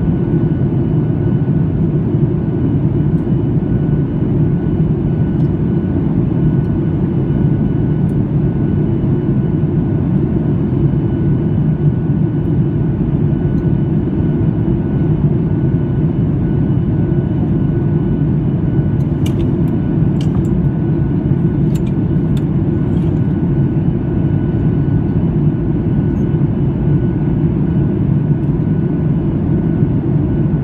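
Steady cabin noise of a Boeing 737 MAX 8 on its approach, heard from a window seat over the wing: a deep even rumble of engine and airflow with a faint steady whine above it. A few faint clicks come about two-thirds of the way through.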